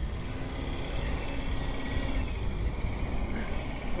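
Minibus engine pulling under load up a steep dirt slope: a steady low drone, with a faint engine tone through the first half.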